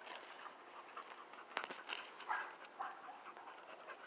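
Faint sounds of an American pit bull terrier scrambling out of a creek through grass onto gravel, with a few short, soft breaths from the dog a little over two seconds in.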